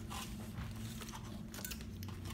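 Quiet room with a steady low hum and a few faint clicks and taps of forks against plates.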